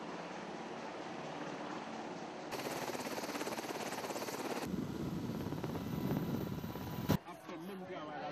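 Helicopter noise: from about two and a half seconds in, a fast rotor chop over a steady hiss, then a deeper, heavier rotor sound from about the middle that cuts off abruptly near the end. Before that there is only a low steady outdoor hiss.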